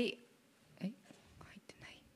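A pause in a woman's speech into a handheld microphone: the end of a word, then soft breathing and a brief murmur a little under a second in, and a faint click near the end.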